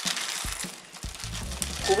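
Plastic bag of loose Hama fuse beads crinkling as it is handled, with a few light ticks. Background music with a steady low bass comes in about a second in.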